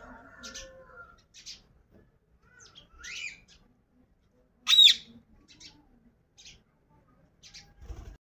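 Rose-ringed parakeets calling: a string of short, high chirps with a rising call about three seconds in and one loud, shrill screech just before halfway.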